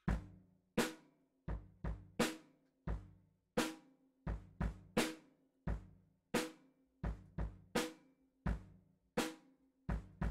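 Drum kit playing a simple repeating beat: bass drum and snare drum struck in turn. There is about one stroke every 0.7 s, with some quicker pairs.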